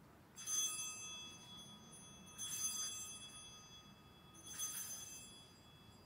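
Altar bell rung three times, about two seconds apart, each ring fading away slowly: the sanctus bell marking the elevation of the consecrated host at Mass.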